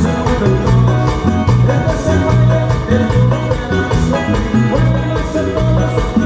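Live dance band music with a steady beat and a pulsing bass line.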